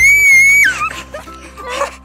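A shrill, high-pitched squeal that slides up quickly, holds for under a second, then drops away, over steady background music.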